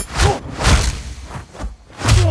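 A quick series of about five whooshes and hits from a hand-to-hand fight, spaced a fraction of a second apart.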